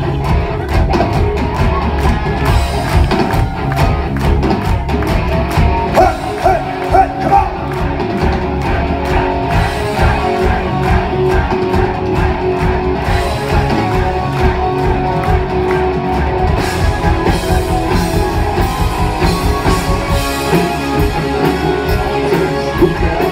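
Rock band playing live through a club PA: electric guitars, bass and drums, loud, with a steady driving beat.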